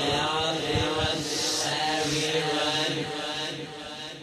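A voice chanting in long, held tones, fading near the end.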